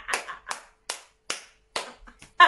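One person clapping their hands, five claps in a steady rhythm of about two to three a second.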